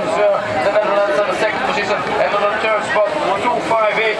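Voices talking and calling out without a break, loud and continuous.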